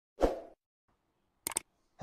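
Subscribe-button animation sound effects: a soft plop about a quarter second in, then two quick sharp clicks near the end.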